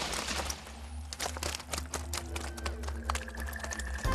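Cartoon sound effect of a load of fish raining down and landing on a heap: a rapid, uneven patter of small impacts over a steady low rumble.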